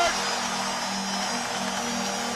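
Ice hockey arena crowd noise in the moments after a goal, over a steady low held musical tone.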